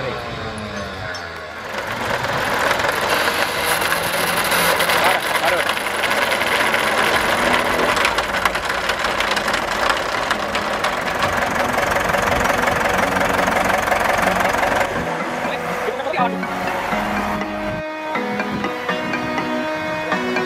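Electric bumper-mounted winch on a stuck motorhome running under load, winding in its cable with a loud, steady, grinding drone. It stops about fifteen seconds in and music takes over.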